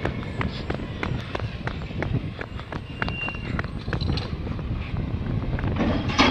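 Footsteps of someone running on a concrete footpath, about three a second, with the phone microphone jostling, over the low running of a garbage truck's engine.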